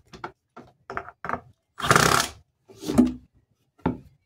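Cordless drill driving a screw through a plastic bucket wall into a wooden leg, in several short bursts; the longest and loudest comes about two seconds in.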